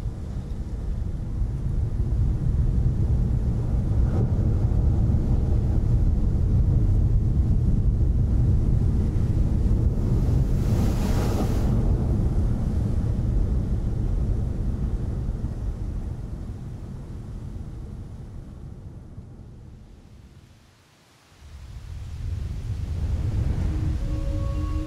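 Breaking ocean surf: a heavy, low rushing rumble with a brighter surge of spray-like hiss about halfway through. It fades almost to nothing near the end, then swells back.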